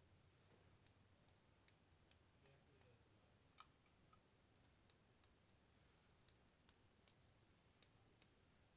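Near silence with faint, irregular light clicks, scattered a few to the second, as watered-down black acrylic paint is flicked off a thin paintbrush onto paper to spatter small dots.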